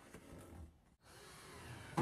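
Faint room noise with no clear event, dropping out to dead silence for a moment a little under a second in, then faintly back.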